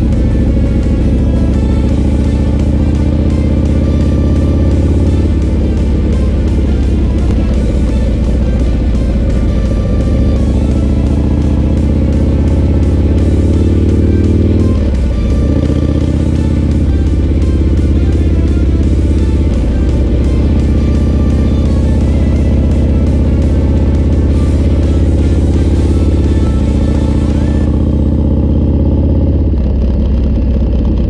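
Motorcycle engine running under way, heard from on board, a steady low drone whose pitch steps up or down a few times.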